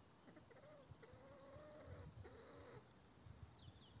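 Near silence with a faint, drawn-out animal call in several rising-and-falling segments, and a short high chirp near the end.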